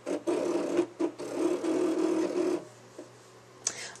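A Cricut electronic cutting machine's motors drive the blade carriage and mat as it cuts a small circle from paper. It makes a buzzing whine with brief pauses and stops about two and a half seconds in.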